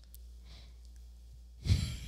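A short pause: faint room tone with a steady low hum and a soft sigh. A man starts talking near the end.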